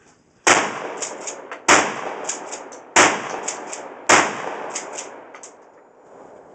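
Shotgun fired four times, a shot roughly every second and a quarter, each loud blast trailing off in echoes.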